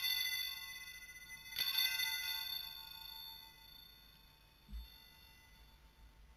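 Altar bells rung at the elevation of the consecrated host: a chime already ringing as it begins, struck again about one and a half seconds in, each ring fading slowly. A brief dull low thump about five seconds in.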